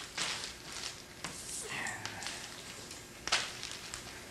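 Plastic vacuum-bag film crinkling and rustling as it is handled and smoothed over a foam wing, with one sharp click a little past three seconds in.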